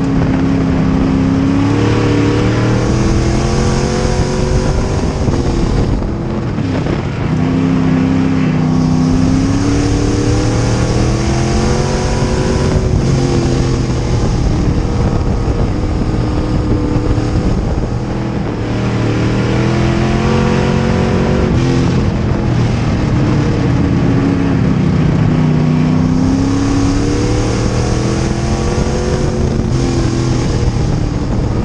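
Dirt track race car engine heard from inside the cockpit at racing speed, loud and continuous. The revs drop as the driver lifts into each turn and climb again down each straight, about every six seconds, over a steady roar of wind and rattle.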